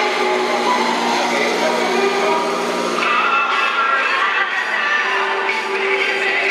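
Amplified rock music from a concert stage, with a sung voice and sustained notes, picked up by a phone microphone far from the stage. It sounds thin, with no deep bass.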